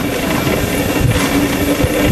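Loud, steady engine drone mixed with rushing noise, holding one low hum throughout.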